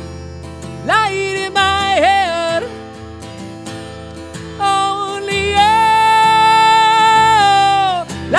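A man singing over a strummed acoustic guitar. Two short sung phrases come about a second in, then a long held note from about halfway through to near the end.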